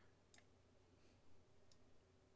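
Near silence: faint room hum with two faint computer-mouse clicks, one about a third of a second in and one near the end.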